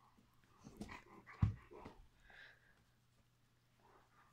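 Two dogs playing over a fabric toy: a quick flurry of short dog noises and scuffling in the first half, with a sharp thump about a second and a half in.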